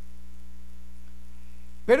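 Steady low electrical hum, like mains hum on the recording, during a pause in a man's speech. His voice starts again right at the end.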